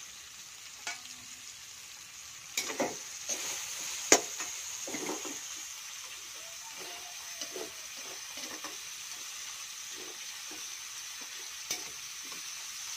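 Chopped onions, tomatoes and chilies sizzling in a stainless-steel honeycomb wok while a metal spoon stirs and scrapes them around the pan, in a run of short strokes. A sharp clink stands out about four seconds in.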